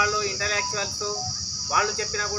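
A man's raised voice calling out in short phrases, over a steady high-pitched insect drone typical of crickets.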